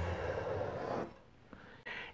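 Chalk drawn across a canvas, one soft scratchy stroke lasting about a second.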